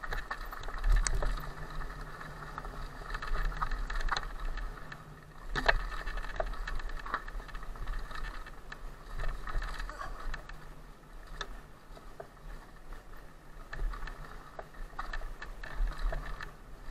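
Cube Stereo Hybrid 160 electric mountain bike ridden fast along a dirt singletrack: an uneven rumble and rattle of tyres and frame on the trail, with sharp knocks from bumps about a second in, halfway through, and again near the end.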